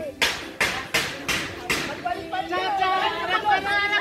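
Five quick, hissing bursts at an even beat in the first two seconds, then several people calling out and talking over one another during an outdoor game.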